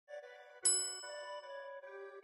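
Intro music: a bright chime strike about half a second in rings out and fades over held musical notes.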